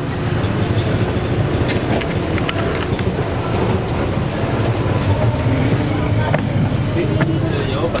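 Mercedes-Benz city bus engine running steadily with a low rumble, heard from its doorway and cabin, with a few short clicks and knocks in the first few seconds.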